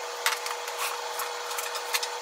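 Small kitchen handling sounds: aluminium foil rustling and light clicks and knocks as a foil-wrapped tray of mushrooms is moved and worked on, over a steady hum.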